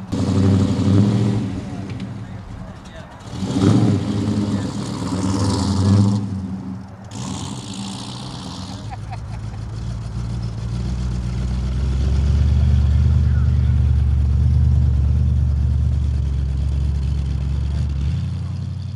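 Classic Mopar car engines driving slowly past on grass. The first car's exhaust rises and falls with revving in the first half. From about ten seconds in, a second car's engine passes close with a deep, steady rumble that grows louder.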